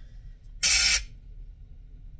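A short, sharp breath, a sniff or exhale close to the microphone, lasting under half a second a little way in, over a faint low hum that dies away at about the same time.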